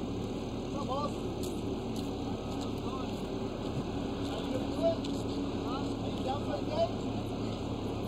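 Engine of an Ingersoll Rand double-drum asphalt roller running with a steady low hum as it compacts fresh asphalt. Brief high chirps sit over it, the loudest about five seconds in and again near seven.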